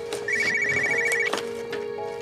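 Mobile phone ringing: a rapidly pulsing high electronic ringtone trill that comes in a burst about a third of a second in and stops after under a second, with a few light clicks as the phone is handled.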